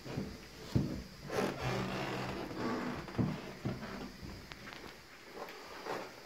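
A few dull knocks with rubbing and scuffing against a wooden bedside cabinet as it is being painted.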